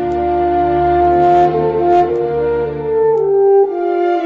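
Slow instrumental background music: several held notes sounding together over a low bass, the chord shifting every second or so.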